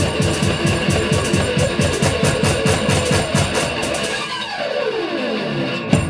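One-man-band live rock: electric slide guitar over a fast foot-played kick drum beat, about six beats a second. The drum drops out about four seconds in while the slide glides down the neck, ending on a sharp hit.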